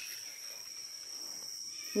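Jungle insects droning steadily in one unbroken high-pitched tone.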